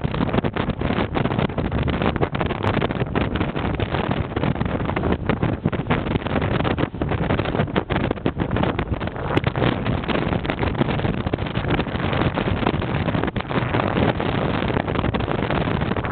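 Wind buffeting the microphone over the steady rumble of a moving vehicle: a loud, continuous rush that flutters rapidly in level.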